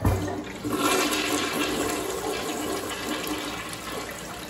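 Mansfield Alto toilet flushing: a clunk as the handle is pressed, then, about a second in, the loud rush of water swirling through the bowl, easing a little toward the end.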